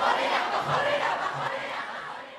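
A crowd of young people shouting together, their voices overlapping, dying away near the end.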